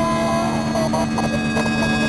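Loud, harsh electronic drone: a steady hum with overtones under rough, distorted noise, held at one level throughout. It is a film sound effect for a painful noise coming through a video call.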